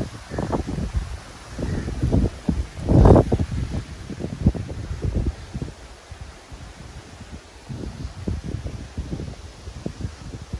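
Wind buffeting the microphone in irregular low gusts, the strongest about three seconds in, with leaves rustling.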